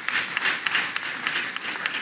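Audience applauding: many hands clapping at once in a steady patter.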